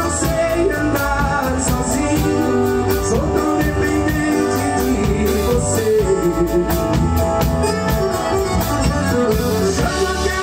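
Live forró band playing: accordion, acoustic guitar, bass guitar and drum kit with a steady beat, and a man singing into a microphone.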